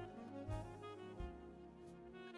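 Soft smooth-jazz instrumental music: sustained melody notes over bass, growing quieter.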